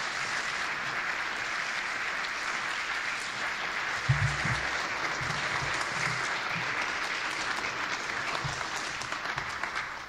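Steady audience applause, easing slightly near the end, with a low thump about four seconds in.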